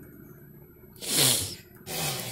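A baby blowing raspberries: a breathy, buzzing puff of air through the lips about a second in, with a falling pitch underneath, then a shorter one near the end.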